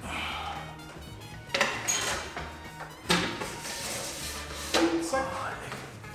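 Background music under the knocks and clatter of an aluminium LED-panel frame being handled and fitted against a ceiling: three sharp knocks, about one and a half, three and five seconds in.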